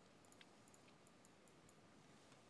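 Near silence with a few faint, short clicks, typical of a computer mouse being clicked.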